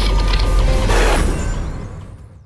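Sound effects of an animated logo intro: a deep bass rumble with mechanical creaking and a swelling whoosh about a second in, starting to fade out near the end.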